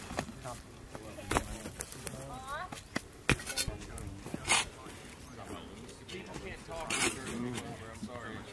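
Spade blades digging into hard, stony soil: a few sharp scrapes and strikes a second or more apart, with indistinct voices of the diggers around them.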